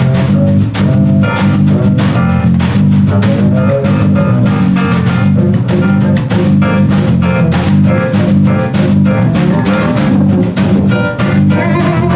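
A band playing loud, busy music live: an electric keyboard played fast with both hands over a drum kit, with a dense, steady bass line underneath.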